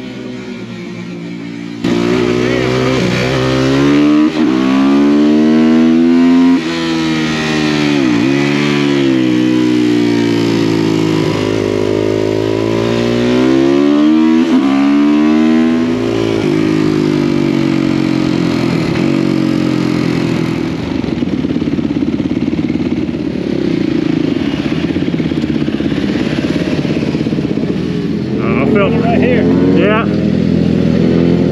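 Supermoto motorcycle engine starts loud about two seconds in, then revs up and down through a run of corners, its pitch climbing and dropping with each throttle roll-on and backing off. About halfway it settles into a steadier drone under a haze of wind noise. Voices come in near the end.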